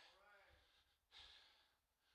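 Near silence with a man's faint breaths into a handheld microphone, twice: once at the start and again a little over a second in.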